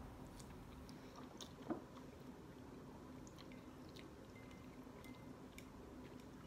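Faint sounds of people eating noodles with chopsticks: quiet chewing with a few small clicks, the clearest about one and a half seconds in, over a faint steady hum.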